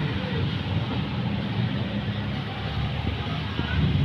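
A motor vehicle engine running steadily close by, a low rumble.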